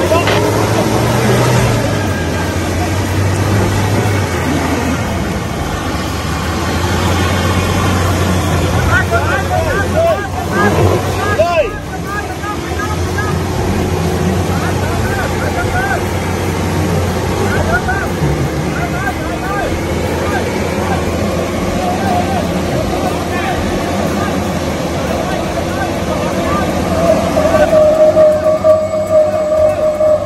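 An SUV's engine running under load as it climbs a steep, rutted mud slope, a steady low drone throughout, with voices of onlookers over it.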